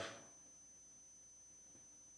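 Near silence: room tone during a pause in speech.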